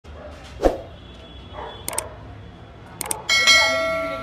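Subscribe-button sound effect: a thump about half a second in, two pairs of quick mouse clicks, then a bell ding near the end that rings on and slowly fades.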